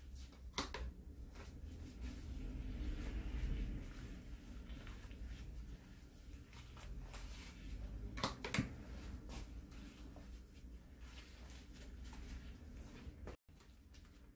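Hair-dye brush strokes through wet, dye-coated hair: soft, rustling strokes with a few sharp clicks from the brush and gloved hands, the loudest about half a second in and twice around eight seconds in.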